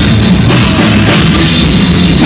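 Live heavy metal band playing loud: distorted electric guitar and bass over a pounding drum kit with cymbals.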